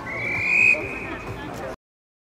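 Referee's whistle: one long blast that rises slightly in pitch and is loudest about half a second in, over background voices, before the audio cuts off suddenly.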